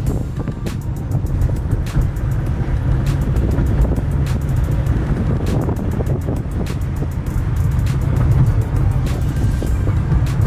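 Steady low rumble of a car's road and engine noise heard from inside the cabin while driving, with music playing along, and occasional light clicks and knocks.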